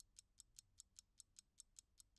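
Very faint, even ticking of a mechanical watch, about five ticks a second.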